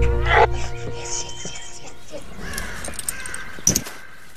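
Film soundtrack: a deep low rumble under the music fades out in the first second, while a single crow-like caw sounds just after the start. Faint forest sounds follow, then a sharp swish or knock near the end.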